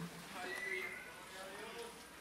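Faint, indistinct voices of a congregation murmuring in a large hall.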